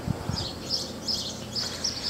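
Birds chirping in the background: a run of short, high, faint chirps. There is a brief low thump right at the start.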